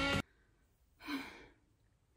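Background music cuts off just after the start; about a second in, a woman lets out one breathy sigh that fades away, an exhale at the end of a workout.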